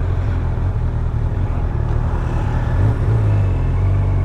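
Motorcycle engine running at low road speed, heard from the rider's seat: a steady low drone as the bike slows to a crawl.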